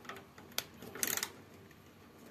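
Phillips screwdriver tightening the screws of a door-handle rosette, with a few faint clicks of tool on metal: one a little after half a second in, then a short cluster about a second in.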